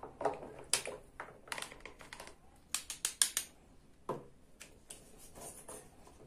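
Hard plastic toy food and toy utensils clicking and clattering as they are handled and picked out of a plastic toy sink. The clicks come irregularly, with a quick cluster about three seconds in.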